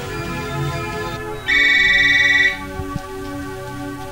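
A telephone ringing once: a single loud electronic trill about a second long, over a background film score.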